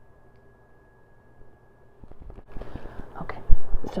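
Near silence for about the first two seconds, then the rustle of a coated-canvas tote being handled and pulled from a fabric dust bag, with a few clicks and one sharp thump about three and a half seconds in.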